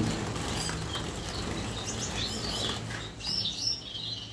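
Gouldian finches fluttering their wings around a wire cage, flushed by a hand reaching in to catch one. A few short high chirps come in the second half.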